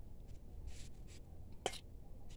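A dry carao pod being broken apart by hand: one sharp snap about one and a half seconds in, over a faint low rumble.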